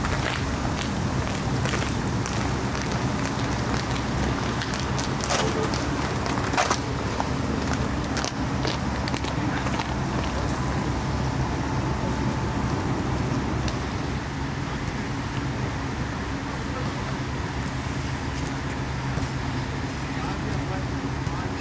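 Steady outdoor background noise with a low, even rumble like distant traffic, and a couple of sharp knocks about five and seven seconds in.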